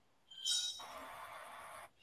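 Faint steady hiss of an open microphone on a video call, with a brief faint sound about half a second in; the hiss cuts off suddenly just before the end.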